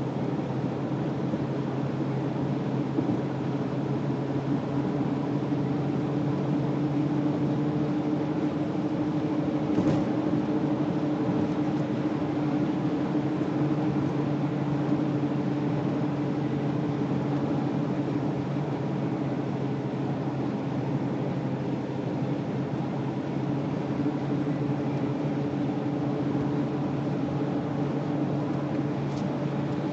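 A Jaguar's engine droning steadily with road noise as the car cruises at an even speed. There is one brief knock about ten seconds in.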